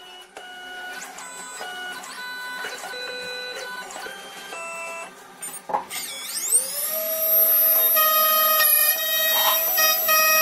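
2M2 Magic Tank key cutting machine running its automatic calibration: its motors move the carriage in short runs, each with a whine that jumps to a new pitch every half second or so. About six seconds in, a motor spins up with a rising whine and settles into a steady, louder high-pitched hum.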